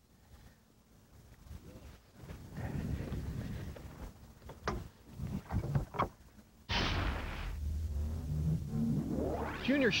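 Knocks and clatter of gear being handled in a bass boat, then about seven seconds in the outboard motor opens up with a sudden rush of sound that settles into a steady low drone.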